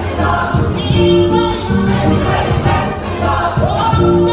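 Gospel choir singing in harmony, with a female soloist singing into a microphone. The chords are held and change about every second.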